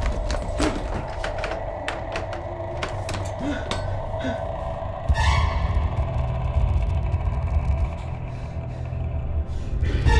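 Horror-film soundtrack: a low rumbling drone under eerie held music tones, with a quick run of knocks and clatters in the first half and a swell about halfway through.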